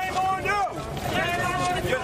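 High-pitched shouting in long, drawn-out cries, the continuing shouts of "shame", with wind noise on the microphone.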